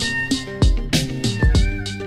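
Instrumental background music with a steady drum beat over held synth notes.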